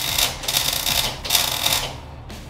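Electric welding arc crackling and hissing in three short bursts of under a second each, with brief gaps, as a half-inch socket is welded onto a beer can.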